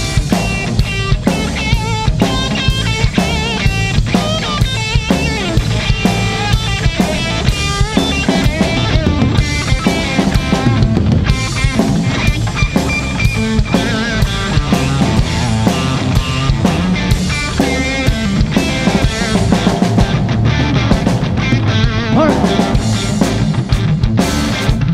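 Live blues-rock trio playing an instrumental passage: electric guitar lead lines with wavering, bent notes over bass guitar and a drum kit keeping a steady beat.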